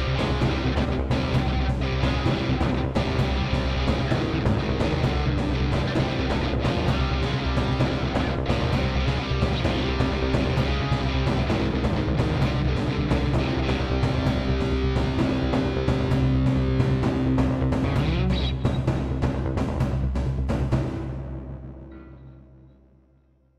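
Guitar riffs played live over a looping cinematic drum pattern from Sugar Bytes DrumComputer's cinematic drums preset; the music fades out near the end.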